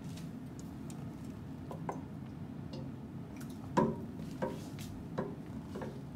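Two sealed aluminium soda cans dropped into a glass aquarium of water: a few light clicks and knocks, the loudest about four seconds in, over a low steady hum.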